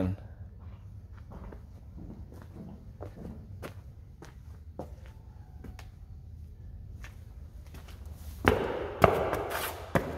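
Footsteps crunching on dry dirt and gravel, irregular and faint. Near the end a louder knock, then a scrape and a click as an exterior door is unlatched and pushed open.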